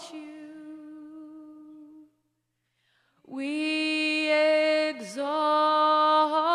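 A woman singing alone into a microphone: a long held note fades away, then after about a second of silence she slides up into a new long held note a little past three seconds in, with a brief dip in pitch near the five-second mark.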